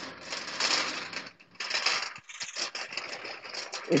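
Fabric rustling and crackling as clothing rubs against a hand-held phone's microphone, irregular, with a couple of brief breaks.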